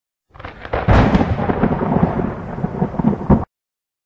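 Title-card intro sound effect: a loud, rumbling, crackling noise like thunder that starts a moment in and cuts off suddenly near the end.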